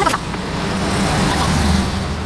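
Road traffic noise: a steady low rumble with hiss that swells slightly toward the end.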